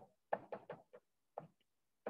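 Chalk tapping and scraping on a chalkboard as a formula is written: a quick, faint run of short taps, about seven of them in the first second and a half.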